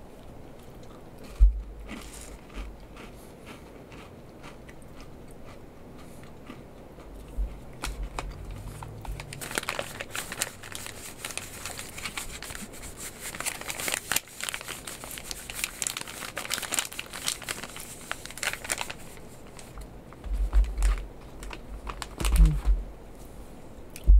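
Crinkling and rustling of a foil-laminate MRE pouch handled in the hands, densest through the middle stretch, with a few low thumps near the start and toward the end.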